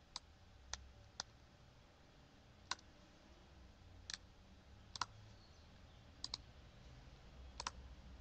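Computer mouse buttons clicking about ten times, singly and in quick pairs, a second or so apart, over a faint low hum.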